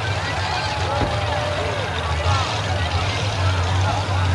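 Steady low engine rumble from a mud-bog race vehicle, with faint crowd voices mixed in.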